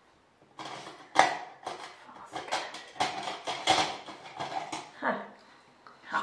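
Makeup products and packaging being handled and rummaged through: a quick, irregular run of clicks, rattles and rustles, with a sharp knock about a second in.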